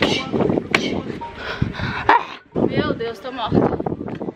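Kicks landing on a Muay Thai kick shield held by a trainer: two sharp slaps about a second and a half apart, among voices and short vocal sounds.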